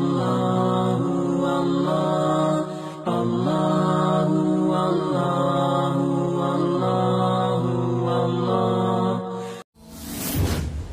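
Intro nasheed: a chanted vocal melody in long held notes over a steady low drone, with a short dip about three seconds in, cutting off abruptly near the end.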